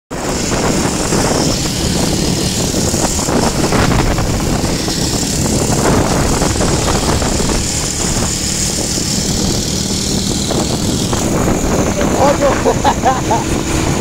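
Motorcycle engine running at steady cruising speed under heavy wind rush on the microphone. A voice calls out over it near the end.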